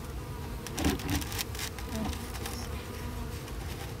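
Honeybees buzzing around the hive, with a few short knocks and scrapes about a second in as a styrofoam insulation board is worked into place on top.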